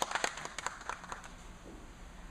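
A brief scattered round of hand-clapping: a few sharp, irregular claps that thin out and stop about a second in.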